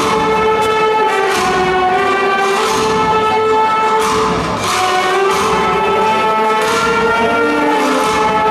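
A wind band of trumpets, saxophones and drums playing sustained brass chords with drum strokes, echoing in a large stone church.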